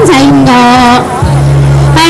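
A woman singing Hmong kwv txhiaj (sung poetry) into a microphone, loud and amplified, holding long wavering notes. Her line breaks off about a second in, leaving a steady low hum.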